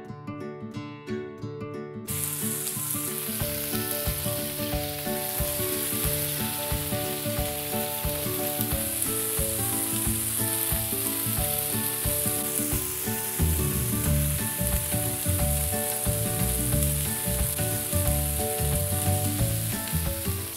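Cherry tomatoes sizzling on a hot griddle over a gas burner, a steady sizzle that starts about two seconds in. Background music plays throughout, plucked guitar-like at the start.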